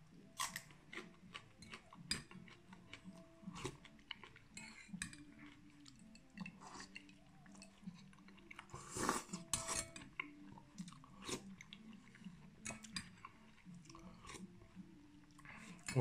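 Eating at close range: crisp bites and chewing of a raw green onion stalk, light clicks of a metal spoon on a glass soup bowl, and a loud slurp of soup from the spoon about nine seconds in.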